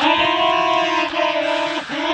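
Pitch-shifted, effect-distorted cartoon voice from Pingu holding one long honk-like note, with a short break about a second in and a new note near the end.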